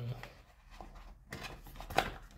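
Hands handling cardboard packaging: faint rubbing and scraping with a few light clicks, and a sharper click near the end as a small box is pulled out of its tray.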